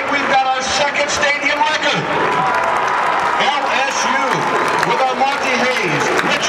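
A man's voice, not clear enough to make out, over stadium crowd noise and applause.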